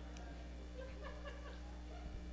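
Quiet room tone with a steady electrical hum, and faint scattered voices from the congregation, some of them laughing softly.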